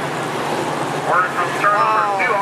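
Late model stock car V8 engines running at low speed on the track, with revs sweeping up and down from about a second in, over a steady haze of track and crowd noise.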